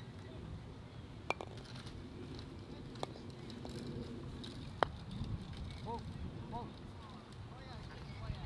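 Croquet mallet striking a ball: three sharp clacks, the third and loudest about five seconds in, over a steady outdoor background.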